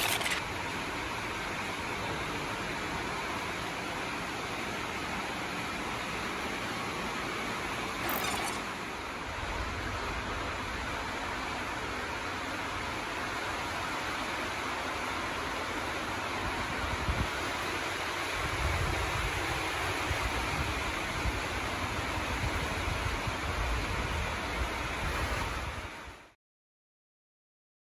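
Heavy rain pouring down steadily, an even hiss of rain on windows and a glass canopy roof. A deeper low rumble joins in during the last third.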